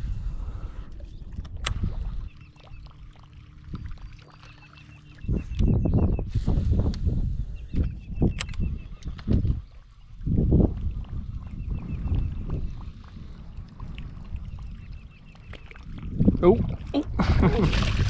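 A fishing reel winding a topwater lure back across the surface, with a faint, evenly repeating tick, over low rumbling gusts. Near the end a bass strikes at the lure with a loud splash.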